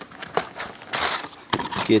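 Cardboard lid of a trading-card hobby box being pulled open: small taps and scrapes, with one short, sharp rustle of cardboard about a second in.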